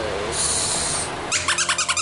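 Sound chip in a squeezed plush Halloween bat toy: a short hiss, then a rapid chattering animal-like call of about ten pulses a second.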